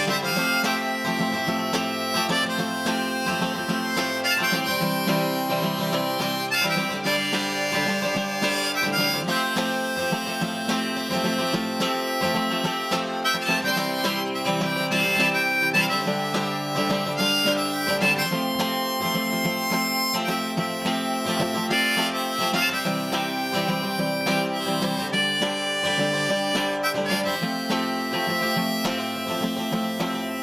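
Harmonica played from a neck holder over a steadily strummed acoustic guitar: a folk harmonica solo with no singing.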